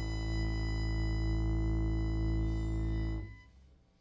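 Live improvised music: one long, steady low held note with a high ringing tone above it, cutting off sharply about three seconds in.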